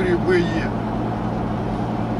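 Steady engine drone and road noise inside a car's cabin at highway speed, with the tail of a man's voice in the first half second.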